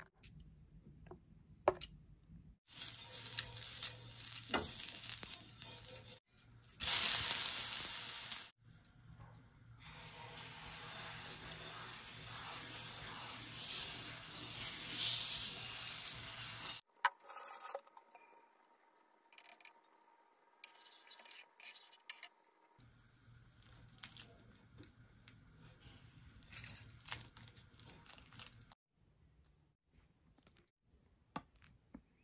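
Chakuli batter sizzling on a hot non-stick pan, in several separate stretches. The loudest and brightest comes a few seconds in, then a long steady sizzle, followed by a quieter stretch with a few faint clicks of handling.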